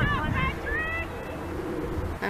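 Distant shouting voices of players and spectators across an open soccer field, over a steady low wind rumble on the microphone.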